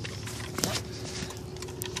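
Rustling and light clicks of a phone being handled and moved, over a faint steady hum.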